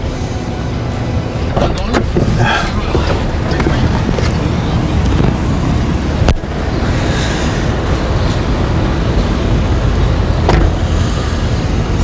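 Steady low rumble of a car, heard first from inside the cabin and then from the street beside it.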